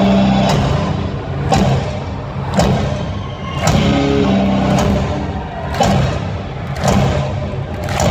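Live rock band playing loud, heard from within the crowd: sustained low chords with a heavy drum hit about once a second.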